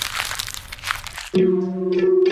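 Dense crackling static noise, like old film-leader crackle. About a second and a third in, it gives way to the opening of a song: an effected electric guitar holding a steady low note.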